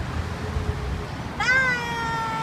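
A woman's high, drawn-out call, like a sung goodbye. It starts about one and a half seconds in, rises briefly, then glides slowly down in pitch.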